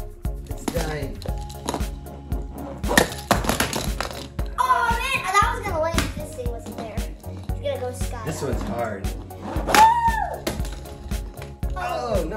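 Background music with a steady beat. There is a short clattering crash about three seconds in, and brief excited shouts around five and ten seconds in.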